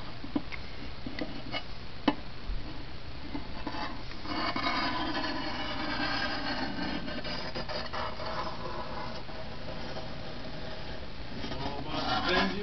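12 V 1500 W pure sine power inverter making a rough, raspy buzzing noise that swells about four seconds in and eases off near the end, with a few handling clicks in the first seconds. The owner finds the unit smoking inside, with its fans not working.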